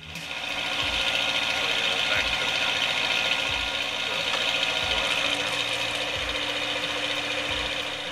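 Machinery running steadily: an even mechanical drone with a low hum, with a soft low thump about every second and a bit.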